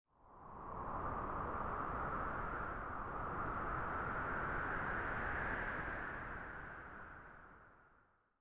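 Logo-intro sound effect: one long whoosh of noise that fades in over the first second, drifts slowly up in pitch, and fades away over the last two seconds.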